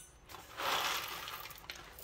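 Coffee beans dropped by hand into a stainless steel dosing cup, a soft rattle that starts about half a second in and fades away.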